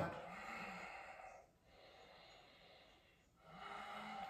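A man breathing audibly: a breath lasting over a second, a fainter one after it, and another starting near the end.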